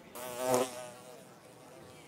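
Housefly buzzing, swelling to its loudest about half a second in, then fading to a faint, steady buzz.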